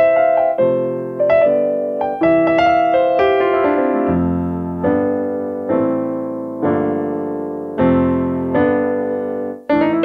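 Roland LX706 digital piano playing its piano voice, with a deep, rich sound: a melody over chords, then from about four seconds in slower, lower full chords, each left to ring and fade.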